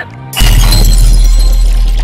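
Glass-shattering sound effect with a heavy bass hit, part of a channel intro sting, starting suddenly about half a second in and holding as a loud wash.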